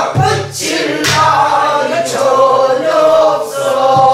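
Namdo folk song sung by several voices, a woman leading with long, bending held notes, over a buk barrel drum struck with a stick a few times.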